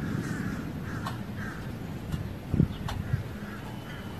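A bird giving a few short calls in the first second and a half, over steady outdoor background noise.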